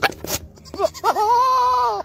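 A goat bleating: a few short calls and sounds, then, about a second in, one long held bleat that drops slightly in pitch at the end.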